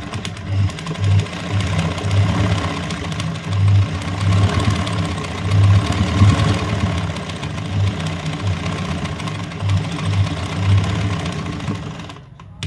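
Sewing machine running at stitching speed, its needle drive thrumming in uneven spurts as the hoop is moved to fill an embroidered leaf; it stops at the very end.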